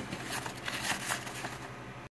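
Handling noise from a phone camera being moved: scattered light clicks and rubbing over a steady low hum.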